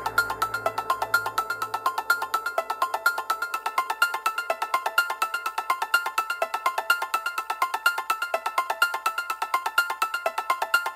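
Background music: a fast, even run of short percussive notes, with a low bass hum that fades out about two seconds in.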